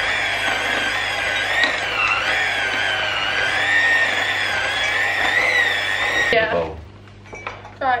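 Electric hand mixer running with its beaters in a glass bowl of cookie dough, a steady whine that wavers slightly in pitch; it switches off about six seconds in.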